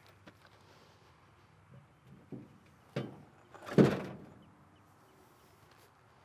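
Mini truck settling onto a steel jack stand as the floor jack is let down: a few light clicks and a knock, then one heavy thunk just before four seconds in.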